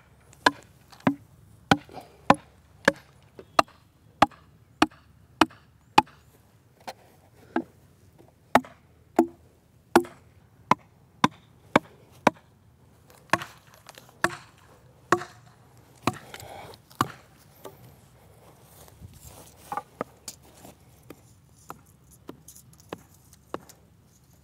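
A hand hammer striking wooden pegs, a steady series of sharp knocks about one and a half a second. After about fifteen seconds the blows thin out into fewer, lighter taps.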